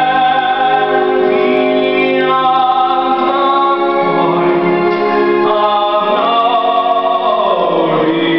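A man's voice singing a musical-theatre duet over an orchestral backing track, holding long notes.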